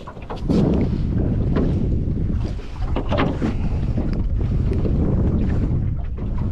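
Wind buffeting the microphone on a small open boat, a steady low rumble, with scattered clicks and knocks of handling the catch and landing net while a rockfish is unhooked with pliers.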